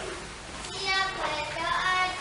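Children's voices singing together, starting a little under a second in.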